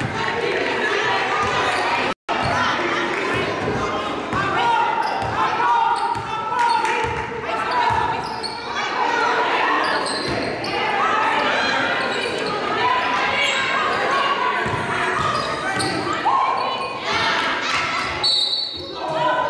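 Indoor basketball game: a basketball dribbled and bouncing on a hardwood gym floor, with players, bench and spectators calling and shouting, all echoing in the hall. The sound cuts out for an instant about two seconds in.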